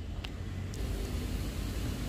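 Street traffic: a motor vehicle passing, a steady engine and road noise with a low rumble.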